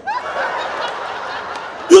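Audience laughing in a large room, a steady wash of laughter held for most of the two seconds.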